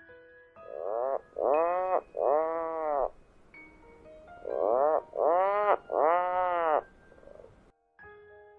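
Puffin calling: two runs of three calls, each call rising and then falling in pitch.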